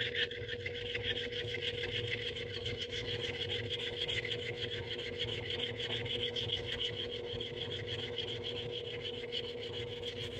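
Copper coin ring being rubbed rapidly back and forth on a nail-buffer sanding block: a continuous, fast, scratchy rubbing as the ring's surface is smoothed. A steady low hum sits underneath.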